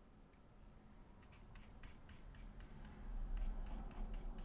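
Stylus scratching across a tablet screen in a quick series of short strokes, drawing diagonal shading lines. It starts about a second in and grows louder toward the end.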